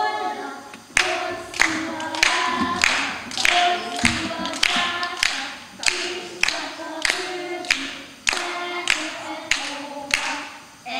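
A group of children singing unaccompanied, with sharp hand claps keeping a steady beat about one and a half times a second, starting about a second in.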